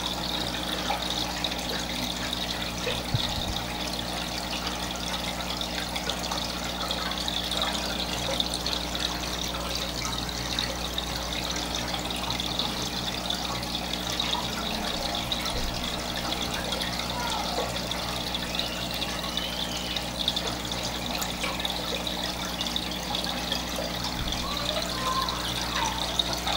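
Aquarium filter and aeration running: a steady trickle and bubble of water, with a low mechanical hum underneath.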